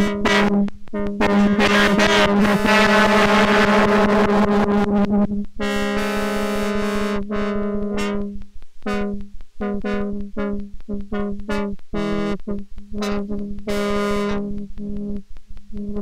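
Electronic music from a lap steel guitar played through an ARP 2600-style synthesizer: a steady low drone with a dense wash of tones over it, which about five seconds in breaks into short, stuttering chopped fragments that cut in and out.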